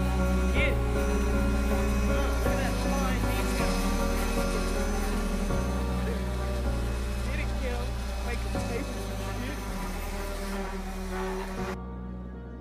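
Background music with low sustained chords changing every few seconds, fading out toward the end.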